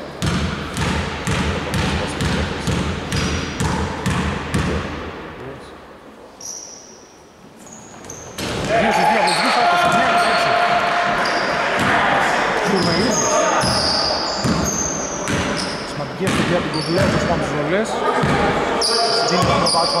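A basketball bouncing again and again on a hardwood gym floor for the first few seconds. After a short lull, sneakers squeak on the floor and players call out as play resumes.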